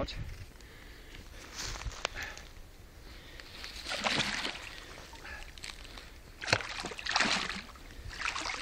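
A large hooked pike thrashing at the surface at the bank, sending up several separate splashes, the loudest near the end.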